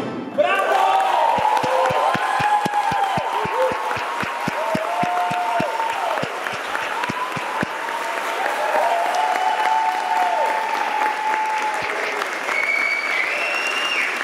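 Concert audience applauding and cheering, breaking out about half a second in. For the first several seconds the clapping falls into a steady beat in unison, about four claps a second, with shouts over it, then loosens into ordinary applause.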